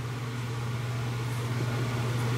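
A steady low hum under even background room noise, with no distinct key clicks.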